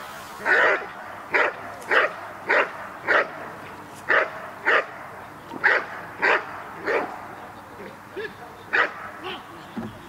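Dog barking repeatedly and steadily at a protection helper, about two sharp barks a second: the guarding bark of the bark-and-hold in protection work. The barking thins out and stops near the end.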